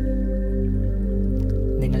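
Meditation background music of steady, sustained drone tones. A man's voice starts speaking near the end.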